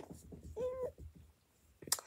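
A child's short, level hum, lasting about a third of a second, a little over half a second in, followed by a sharp click just before the end.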